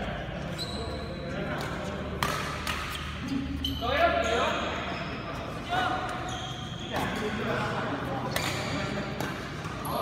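Badminton rally in an indoor hall: sharp racket strikes on the shuttlecock come about every second, with short high shoe squeaks on the court and players' voices between them.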